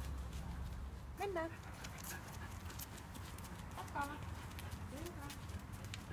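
Footsteps on asphalt as a person walks with a rough collie heeling at her side, the steps coming as light, even ticks. A few short, high, pitch-bending voice sounds come about a second in and again around four and five seconds in.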